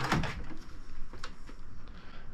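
Metal hand tools clinking and clicking as someone rummages through an open drawer of a rolling steel toolbox, a few light scattered clicks.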